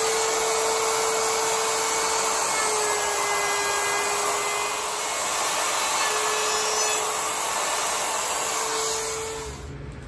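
Handheld wood router running under load, its bit cutting into pine to rout a guitar neck pocket along a template. A steady motor whine with cutting noise, dipping slightly about halfway and stopping shortly before the end.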